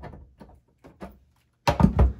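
Light clicks and taps of a small screw and a cordless screwdriver being handled as a screw comes out of a turntable's base cover, then one loud thump near the end.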